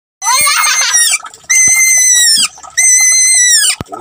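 A wet rabbit screaming in distress while being bathed: three long, very high-pitched cries, each nearly a second long and falling in pitch at its end, with a sharp click just before the last one ends.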